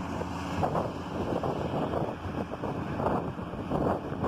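Steady road and wind noise heard from inside a moving car, with a low engine hum underneath.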